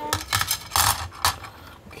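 Hard plastic rods clicking and clattering against each other and the steel platform of a digital kitchen scale as they are laid on it: a rapid string of light knocks.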